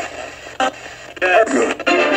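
A radio sweeping through stations as a spirit box: steady static hiss broken by short snatches of broadcast voices, the longest starting a little past a second in. A fragment at the very end is taken by the session as a spirit saying "that room".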